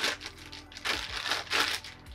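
Clear plastic bag crinkling in a few short bursts as a lens hood is pulled out of it.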